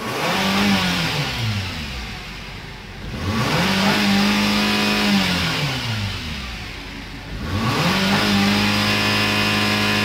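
2011 Nissan Dualis 2.0 automatic's four-cylinder petrol engine revved hard in Park with no load. It rises quickly, holds and drops back twice, then rises a third time and stays held at high revs.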